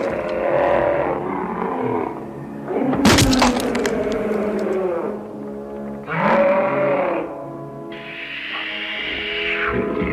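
Dramatic soundtrack with a man's anguished cries over it. A cluster of sharp wooden cracks, like a mallet driving a stake, comes about three seconds in, and brass music rises near the end.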